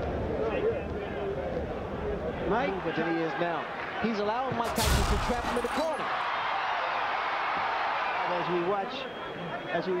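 Boxing arena broadcast sound: a heavy thump about five seconds in as a fighter is knocked down, then the crowd noise swells for a few seconds. Men's voices carry on underneath.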